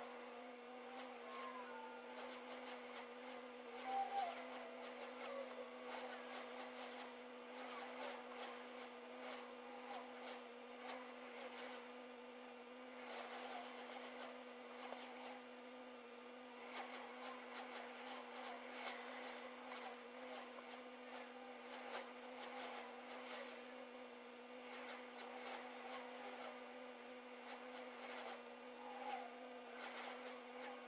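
Faint steady buzzing hum heard inside a stationary car's cabin, with a few faint, irregular sounds around it.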